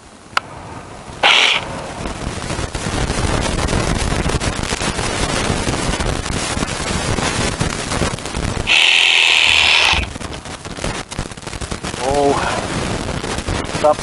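Reciprocating saw cutting into the trunk of a thick pine tree at its base. The blade chatters steadily from about a second in, with a louder, higher-pitched stretch a little before ten seconds in.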